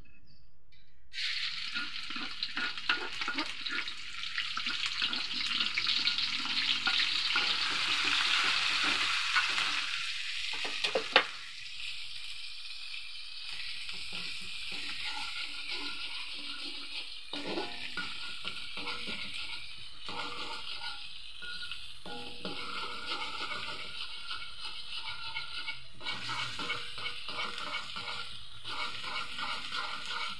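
Chopped aromatics frying in hot oil in a wok. The sizzle starts suddenly about a second in, is loudest for the next several seconds, then settles to a lower sizzle. A ladle stirs and scrapes against the wok, with one sharp clink about eleven seconds in.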